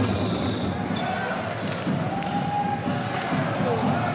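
Spectator crowd in a large indoor sports hall during a volleyball match, a steady mass of voices with scattered thuds of the ball being played.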